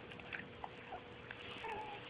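Dog nuzzling and licking a baby's face: faint snuffles and small wet mouth clicks, with a brief whimper near the end.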